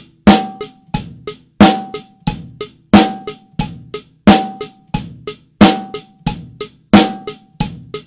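Acoustic drum kit playing a steady groove of bass drum, snare and hi-hat in time with a metronome. The strongest stroke comes about every 1.3 s, with lighter strokes between. The snare is played so tightly on the click that the metronome is almost impossible to hear.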